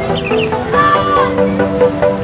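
Basuri multi-tone musical air horn on an SJM Trans coach, sounded long: a run of steady stepped notes, with a rising-and-falling crow-like call about a second in.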